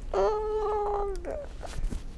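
A young child's voice: one drawn-out, high-pitched vocal sound held on a steady note for about a second, falling off at the end.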